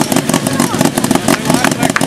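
An autocross car's engine running at low revs as it drives slowly, a steady, rapidly pulsing rumble. A voice over a loudspeaker is faintly audible under it.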